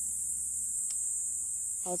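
Crickets or other insects in a steady, high-pitched chorus, with a faint low hum underneath.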